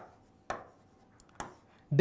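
Marker pen tapping and stroking on a writing board while writing: three short taps, the second about half a second in and the third near a second and a half.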